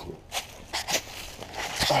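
Footsteps on dry leaves and grass, a few irregular crunchy steps with the camera jostling.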